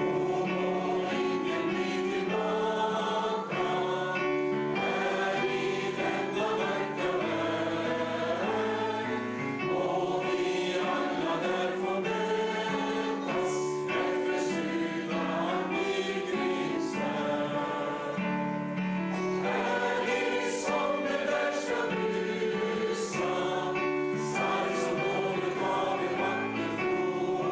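Congregation singing a hymn together, with keyboard accompaniment, in long, held notes.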